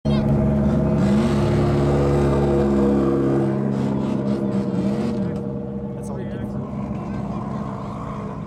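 Drag cars' engines, a supercharged Dodge Challenger and an LS-swapped Pontiac Trans Am: held at steady high revs for about three and a half seconds during the Challenger's burnout, then dropping back to a lower, uneven running with a couple of short revs.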